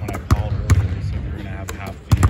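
Basketballs slapping into hands and bouncing on a hardwood gym floor during a passing drill, several sharp impacts about half a second to a second apart.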